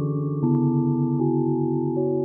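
Slow ambient music of held keyboard chords, changing about half a second in and again just after a second, with a low note pulsing quickly underneath.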